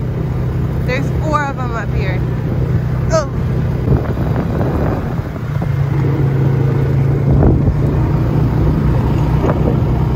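Four-wheeler (ATV) engine running steadily while riding along a dirt trail, with a low, even hum that gets a little stronger in the middle.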